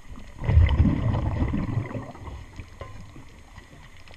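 A diver's exhaled breath bubbling out of the regulator underwater: a gurgling low rumble that starts about half a second in and fades by about two seconds.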